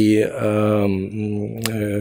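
A man's voice holding a long, drawn-out hesitation vowel at a steady low pitch, a spoken filler between phrases of a lecture.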